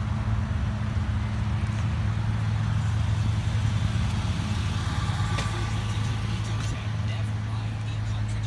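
Steady low hum of an idling vehicle engine, even in pitch throughout, with a single sharp click about five seconds in.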